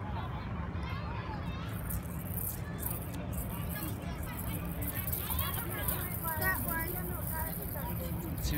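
Indistinct background voices and chatter over a steady low rumble, with the voices growing a little clearer past the middle.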